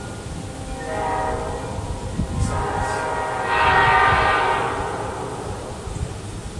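Nathan Airchime P5 five-chime locomotive air horn sounding its chord in two swells, the second and louder one about three and a half seconds in, with the chord carrying on faintly between them.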